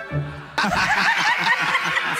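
Laughter breaking out suddenly about half a second in, a quick run of repeated high 'ha-ha' sounds, with the judges of a TV talent show laughing at a joke.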